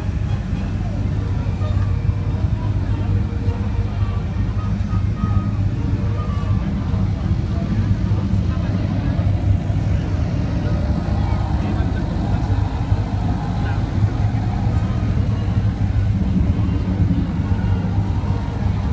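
A steady low engine hum that runs unchanged throughout, with voices underneath.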